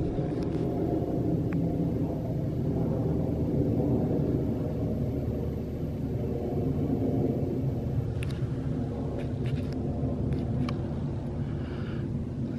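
Steady low rumble of distant highway traffic, with a few short faint clicks near the end.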